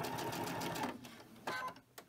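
Sewing machine running at a steady pace and stitching a seam with a rapid, even needle rhythm, then stopping about a second in.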